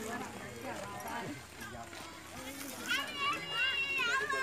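Indistinct talking voices, with a higher-pitched voice rising and getting louder near the end.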